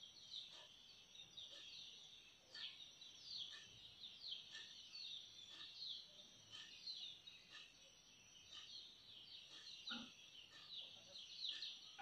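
Faint chirping of small birds: many short, quick falling high notes repeated throughout, over an otherwise near-silent room.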